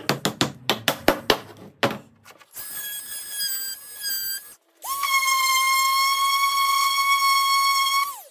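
A claw hammer taps wooden dowels into drilled holes with about eight sharp knocks. An oscillating multi-tool then whines in short stretches as it cuts the dowels flush. A random orbital sander follows with a steady high whine that winds down at the very end.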